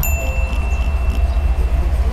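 A single bell-like ding at the start that rings on one high note for nearly two seconds, over a steady low rumble.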